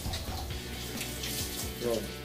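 Water running and splashing into a kitchen sink during dish washing, a steady hiss of water.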